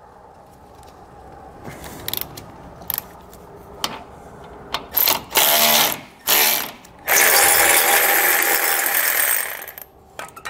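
Cordless electric ratchet spinning a socket to back out an 18 mm tow hook bolt from a truck's frame, run in three short bursts and then in one longer run of about two and a half seconds. A few light clicks come before it.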